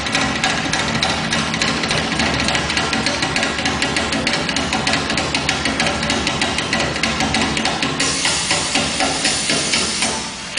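Fast live drumming on a set of small hand drums, a dense run of rapid strokes with no letup. About eight seconds in, a brighter, hissing shimmer joins the drumming.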